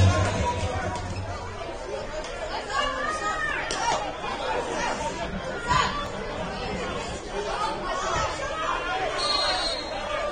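Scattered voices of spectators and people on the sideline talking and calling out in the open stadium, as music dies away in the first second or so. There is one sharp thump a little past halfway.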